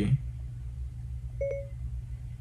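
A steady low rumble, with a single short electronic beep and click about one and a half seconds in.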